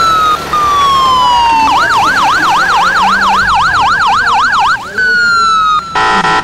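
Ambulance siren: a slow falling wail, then from about two seconds in a fast warbling yelp of roughly four to five cycles a second for about three seconds, switching back to a slow wail near the end.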